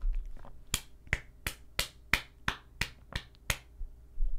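A low bump at the start, then a run of about nine sharp clicks, evenly spaced about three a second.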